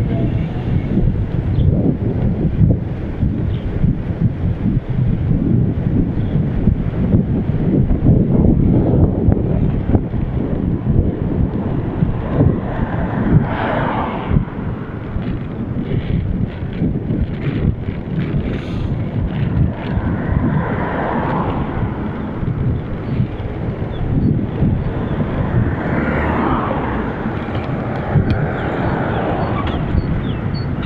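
Wind buffeting the microphone of a bicycle-mounted action camera while riding, a loud continuous low rumble, with road traffic swelling past a few times.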